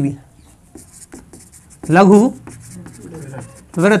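Marker pen writing on a whiteboard: soft, faint scratching strokes, broken by a short spoken syllable about two seconds in.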